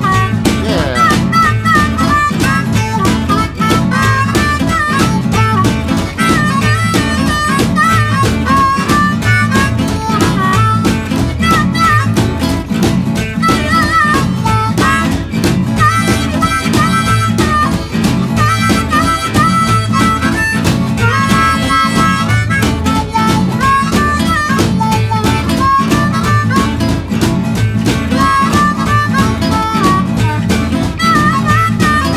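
Instrumental break in a blues song: a harmonica plays a solo of short repeated phrases, with a few bent notes, over guitar and a steady beat.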